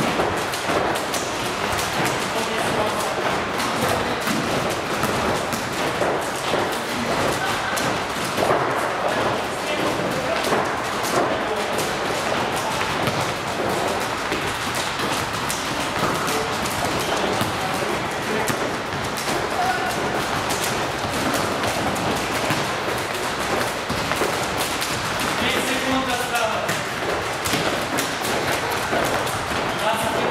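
Many thuds and taps from students exercising at gym stations: jump ropes hitting the floor, feet landing and a volleyball being struck. Indistinct voices run underneath.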